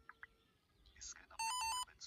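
A short electronic beep tune, a few steady tones stepping between pitches for about half a second, about a second and a half in.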